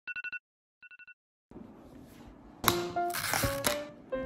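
A quick run of short, high electronic pips, an edited-in sound effect for a title card, with a fainter repeat about a second in. Background music comes in a little past halfway.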